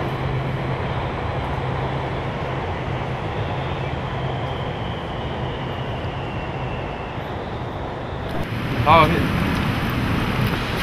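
Elevated electric metro train passing over steady city traffic noise, with a low hum and a faint high whine that slowly falls in pitch and fades. A man's exclamation comes in near the end.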